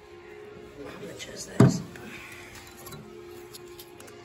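Steady background music playing throughout, with a single loud thump about a second and a half in.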